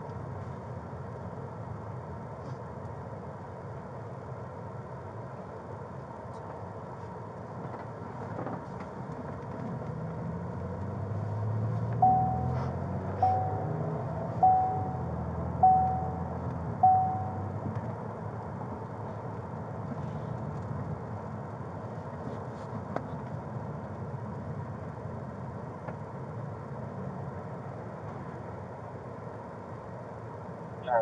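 Patrol car cabin noise while driving: a steady engine and road rumble that swells for several seconds midway. Over the swell come five short electronic beeps at one pitch, about a second apart.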